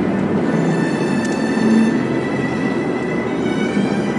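Steady road and tyre noise inside a moving car's cabin, with music from the car stereo's internet radio playing underneath.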